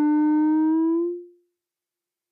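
Frap Tools CUNSA filter self-oscillating from its bandpass output: a steady synth tone with a stack of overtones. As its Q is turned down, the tone rises slightly in pitch and fades out about a second in, dropping below self-oscillation.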